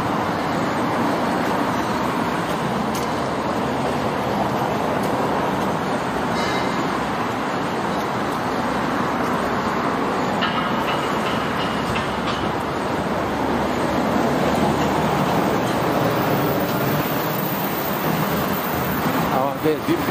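Steady city road traffic noise from cars and buses passing on a busy avenue.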